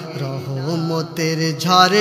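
A man singing a Bangla gozal, an Islamic devotional song, in long wavering notes, swelling louder near the end.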